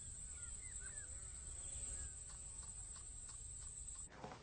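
Outdoor ambience: a few short bird chirps in the first couple of seconds over a low, steady rumble and a steady high-pitched whine.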